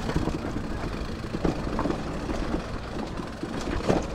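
Mountain bike rolling fast down a rough dirt trail: a steady rumble of tyres and frame over the ground, with small rattles and knocks from bumps and a sharper knock near the end.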